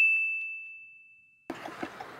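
A single bell-like ding sound effect: one clear, high ringing tone that fades away and is cut off about a second and a half in.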